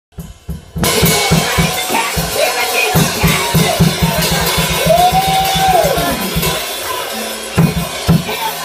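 Live drum kit playing a fast, busy beat on bass drum and snare, with a single held note that swells and falls away about five seconds in.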